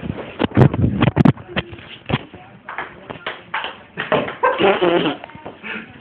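Sharp knocks and clicks of a table tennis game, several in the first two seconds and the loudest near the start, followed by a person's high-pitched voice over the second half.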